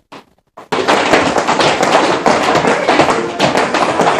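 Many tap shoes tapping on a studio dance floor as a group of young children and their teacher dance. It starts suddenly just under a second in and runs on as a dense, uneven mass of loud clicks.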